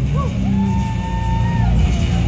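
Live band music: amplified acoustic guitar over drums and bass, with a voice holding a high note through the middle.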